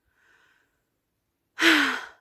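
A woman's faint breath in, then near the end a loud, breathy sigh, about half a second long, whose voice falls in pitch.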